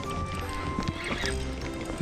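Background music: a melody of held notes stepping in pitch over a steady low bass.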